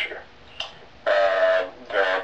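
A man's voice held on one long, level hesitation sound ("uhh") for under a second after a quiet pause, heard through a low-quality internet call.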